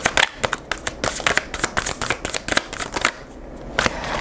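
A tarot deck being shuffled by hand: a quick, uneven run of card flicks and slaps that stops about three seconds in.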